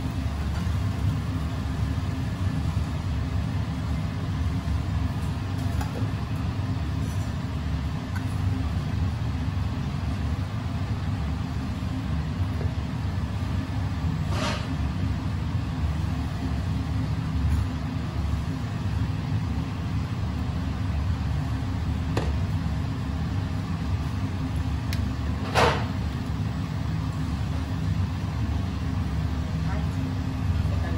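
Steady low rumble of kitchen background noise, with a few sharp clinks of stainless-steel bowls and utensils being handled, the loudest a little over three-quarters of the way in.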